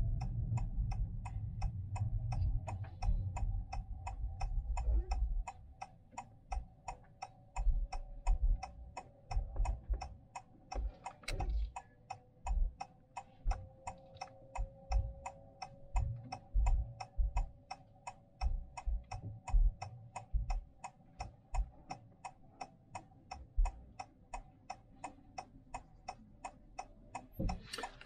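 A car's turn-signal indicator ticking at an even, steady rate, heard inside the cabin, over a low rumble of road noise that eases after the first few seconds as the car slows to pull in at the kerb.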